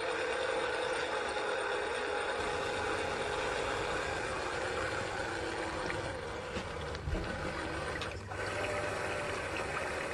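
RC model paddle steamer under way: its small motor running with a steady whine while the paddle wheels churn the water. There is a small click about seven seconds in and a brief dip about a second later.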